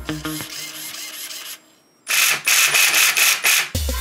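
Background music fades out, then about a second and a half of rapid, evenly repeated rasping clicks, about five a second, from something mechanical; music with a beat comes back near the end.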